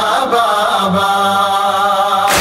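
Noha recitation: a male voice chanting a mournful lament in long, gently wavering held notes.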